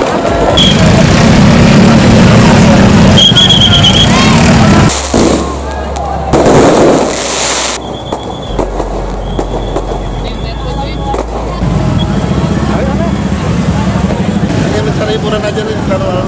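Fireworks crackling and popping over the steady din of a packed street crowd and slow-moving vehicle engines. A loud burst of noise rises over it about six to eight seconds in.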